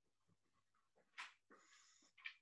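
Near silence on a video call, with a few faint, brief noises from participants' open microphones.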